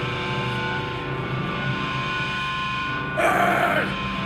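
Guitar amplifier feedback and sustained guitar notes ringing as steady tones over a low amp drone between songs of a hardcore set, then about three seconds in a vocalist shouts loudly into the microphone through the PA.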